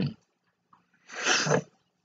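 A single short, breathy breath sound from a woman, about half a second long and a second in, noisy rather than voiced, between phrases of her speech.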